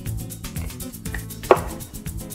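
Background music, with one sharp knock about one and a half seconds in: a kitchen knife cutting through a lemon and striking the wooden cutting board.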